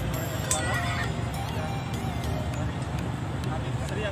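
Indistinct voice over a microphone and loudspeaker, with music playing underneath.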